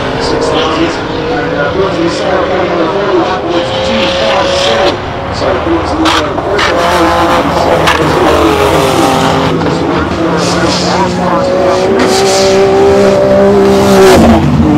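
Tuned 1200 hp Nissan GT-R R35 race car with its twin-turbo V6 at full throttle, the pitch rising in long sweeps and falling back at each gear change, loudest near the end.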